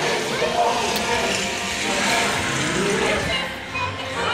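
Dark-ride soundtrack of music and voices mixed over a steady rushing noise.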